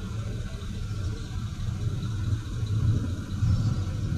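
Low, uneven rumble of vehicle engines idling in a stopped queue of trucks and cars.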